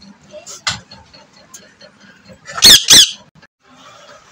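Rose-ringed parakeet (Indian ringneck) saying its name 'mitthu' in two loud, shrill syllables near the end, after a brief softer chirp under a second in.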